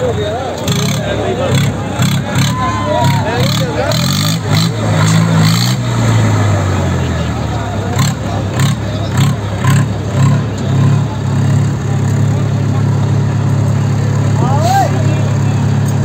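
A diesel tractor engine runs under load in a tug-of-war pull. Its pitch rises and falls about five to seven seconds in, then it settles into a steady, hard pull. People shout over it.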